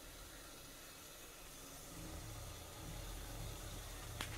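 Faint steady hiss with a low hum: a gas burner and water boiling under an idli steamer.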